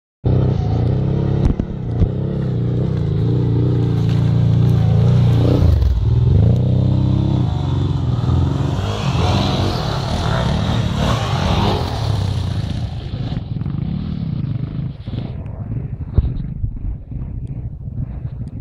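Enduro motorcycle engines on a dirt trail: one runs with a steady note close by, dips and rises in revs about six seconds in, then a louder, rougher stretch follows as the bikes come through. The sound eases off after about thirteen seconds.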